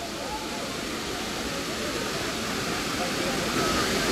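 Steady rush of a waterfall pouring into a pool, with the faint chatter of bathers' voices mixed in, growing a little louder near the end.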